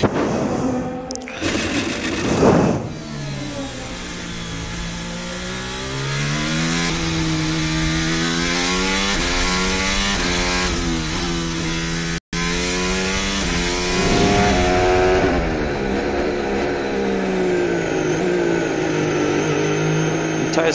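Formula 1 car's 1.6-litre turbocharged V6 hybrid engine heard onboard, its note repeatedly climbing and dropping through gear changes. A loud rough rushing noise comes about two seconds in, and the sound cuts out for an instant about twelve seconds in before the engine note carries on.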